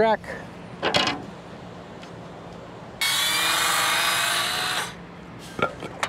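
Circular saw running on a guide track and cutting through the wooden curb for about two seconds, starting abruptly and winding down. A single sharp knock comes about a second in.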